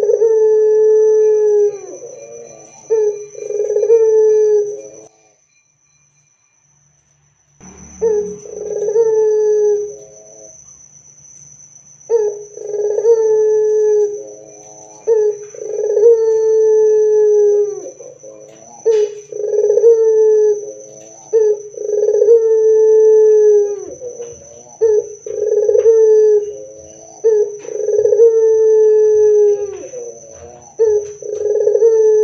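Barbary dove (puter) cooing over and over: a dozen or so long, deep rolling coos, each held steady then dipping in pitch at the end. The calls stop for about two seconds early on, then resume.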